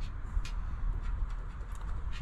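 Quiet background with a low steady rumble and a few faint ticks.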